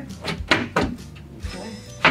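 Background music with a steady beat, with two sharp knocks about half a second in as a cabinet panel is knocked into place against the carcass.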